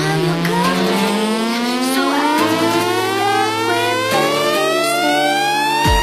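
Electronic dance music build-up: a synthesizer riser with a rich, buzzy tone climbs steadily in pitch for about six seconds over held lower tones, then levels off at the top.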